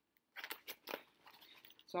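Paper chart sheets rustling and crackling as they are handled and set down, a cluster of short crinkles about half a second in, then a few lighter ones.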